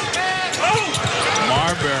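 Court sound of a college basketball game in play: the ball bouncing on the hardwood floor and short squeaks, under voices.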